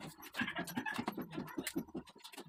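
Rapid, irregular scratching and clicking of hand work on a steel mesh grille being fitted and screwed into a plastic car bumper.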